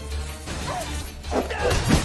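Film soundtrack: dramatic music with loud crashing impacts that build up toward the end.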